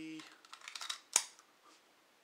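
A Ruger Mark III pistol being picked up and handled: faint rustle and scrape, then a single sharp metallic click a little over a second in.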